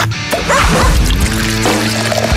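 Radio-station jingle music with a steady low tone and a few short sliding sound effects.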